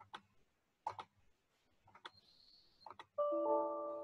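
A few mouse clicks, then about three seconds in the Windows error chime sounds, a chord of several notes that rings and fades: the alert for a Python SyntaxError dialog, the code failing to run because of an indentation error.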